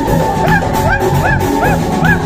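Live band dance music playing loudly. A lead instrument repeats short notes that rise and fall in pitch, a few each second, over a steady drum beat.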